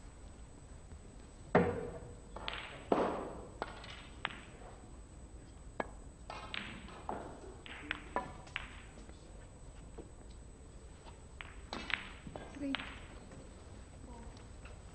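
Snooker balls struck and colliding: a sharp click about a second and a half in, then a run of lighter clicks and knocks as the balls meet each other and the cushions, and another cluster of clicks near the end.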